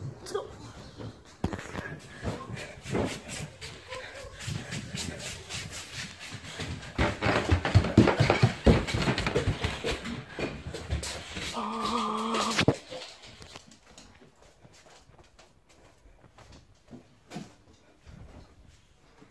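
Quick footsteps, bumps and rustling of children hurrying off to hide, mixed with phone handling noise, busiest from about seven to thirteen seconds in, then much quieter. A short, steady whine comes about twelve seconds in.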